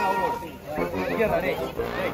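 Several people's voices chattering and calling out over one another.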